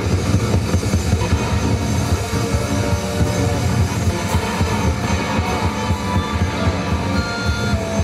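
Live rock band playing loud through a stage PA: fast, driving drum-kit beats under electric guitar and keyboards.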